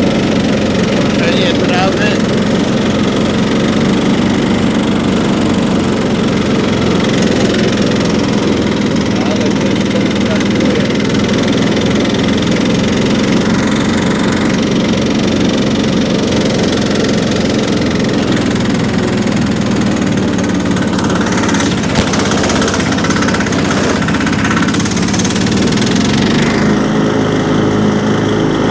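Riding lawn mower engine running steadily as it mows through long grass.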